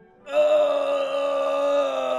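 A woman singing one long, steady held note, starting about a third of a second in.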